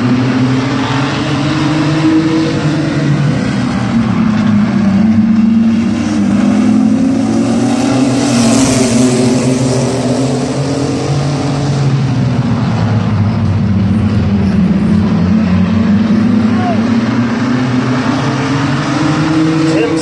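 A pack of mini-truck race engines running laps of the oval, their pitch rising and falling through the turns. The sound swells as the trucks pass close by about eight to ten seconds in.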